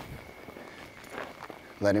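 Faint, soft hoofbeats of a cutting horse stopping and turning on deep arena dirt.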